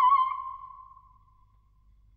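Unaccompanied soprano holding a high note with a wide, even vibrato, which dies away within about a second as the sung passage ends.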